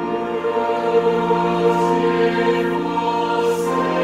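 Large mixed choir of men's and women's voices singing, coming in together right at the start after a passage of organ alone.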